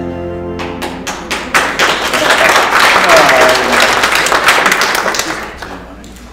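A congregation's sung chord dies away just after the start, then the congregation applauds, dense clapping that thins and fades near the end.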